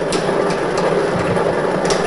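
Lottery ball draw machine running: a steady rush with the balls rattling and clattering inside it, and a few sharp clicks.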